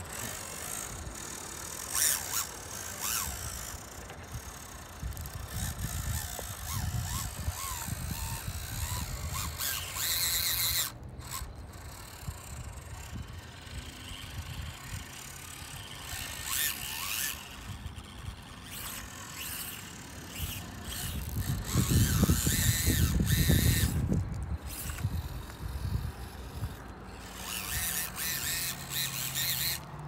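Small electric motors and geared drivetrains of 1/24-scale SCX24 RC crawlers whining as they climb a steep dirt hill, with tyres scrabbling on loose dirt and gravel. There is a louder, low rumbling stretch about two-thirds of the way through.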